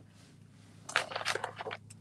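Hands rummaging among craft supplies on a table: about a second in, a short stretch of rustling and crunchy crackling as things are moved and searched through.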